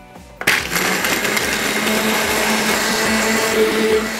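Countertop blender starting up about half a second in and then running steadily at full speed with a constant hum. It is grinding soaked, peeled almonds in water into almond milk.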